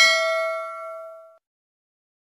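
Notification-bell sound effect from a subscribe-button animation: a single bright bell ding that rings out and fades away over about a second and a half.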